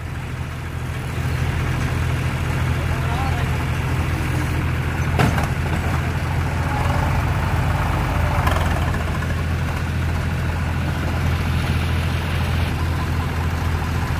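Eicher 485 tractor's three-cylinder diesel engine running steadily, with a single sharp click about five seconds in.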